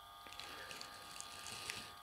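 Faint steady buzzing hum made of several held tones, with a couple of light clicks.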